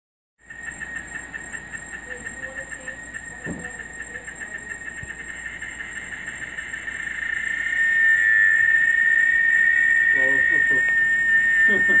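Cicadas calling in a chorus: a high-pitched pulsing buzz, about five pulses a second, that swells about seven seconds in into a loud, steady, ear-piercing whine.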